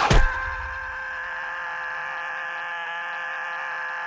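A short crash right at the start, then a steady held chord of several tones that does not change: a sustained musical sting in an animated film's soundtrack.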